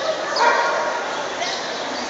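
Dogs barking in a large indoor show hall over a steady background of crowd chatter, loudest about half a second in.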